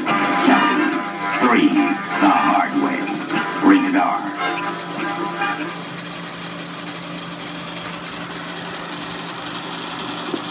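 Film trailer soundtrack, voices and music, playing through a film projector's speaker for about the first five and a half seconds, then stopping. After that only the projector's motor and fan are heard running with a steady hum.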